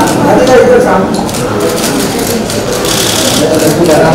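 Several people talking at once in a busy room, with a few sharp clicks among the voices.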